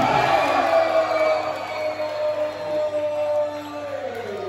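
Crowd shouting over music, the crowd loudest in the first second, while a long held note slowly falls in pitch for about three seconds.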